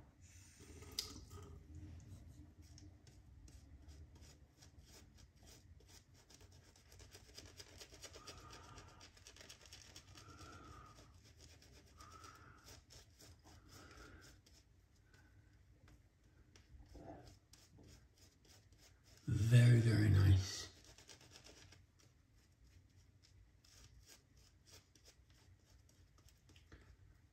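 Shaving brush lathering soap on a stubbled face: faint, continuous scratchy scrubbing of bristles against beard stubble. About three-quarters of the way through, a short louder voice sound interrupts it.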